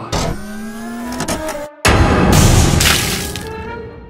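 Music with a slowly rising tone, then about two seconds in a sudden loud crash sound effect that fades over a second and a half, marking a toy slime barrel being knocked over.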